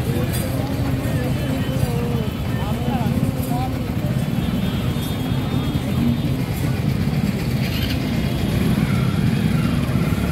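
Busy street ambience: people talking and calling out over a steady low rumble of road traffic.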